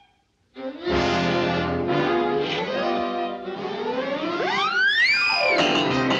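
Cartoon orchestral score. After a brief silence, the full orchestra comes in abruptly about half a second in. Near the end a swooping glide rises steeply and falls back.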